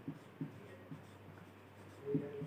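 Faint strokes of a marker on a whiteboard, a couple of short ones in the first half second, over a low steady hum.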